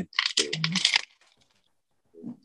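Thin black plastic plant pot crackling as a soaked orchid is worked loose and pulled out of it, a quick run of sharp crinkles that stops about a second in. A brief voice sound falls in the middle of the crackling.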